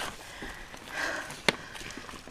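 Mountain bike rolling fast over rough, leaf-covered rocky singletrack: tyre and trail noise with light rattles, and one sharp knock about one and a half seconds in.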